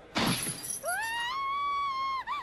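Audio from the anime episode playing: a sudden crash like something shattering, then a high-pitched wail that rises and holds for about a second, cut off by a short second cry.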